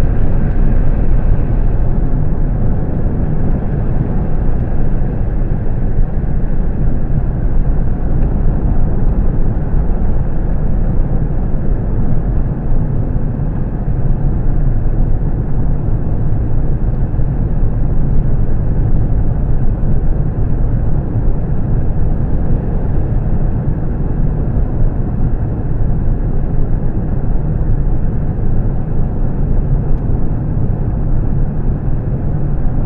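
Steady road and engine noise of a car driving on a paved highway, heard from inside the cabin, heaviest in the low end and unbroken throughout.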